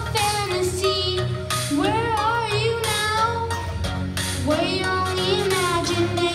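A young boy singing through a microphone and PA in three long, drawn-out phrases, over a backing track with a steady low bass line.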